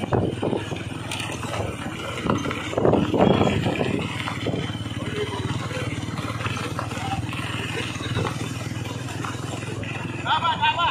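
Several motorcycles running steadily at low speed. Voices are heard over the engines in the first few seconds.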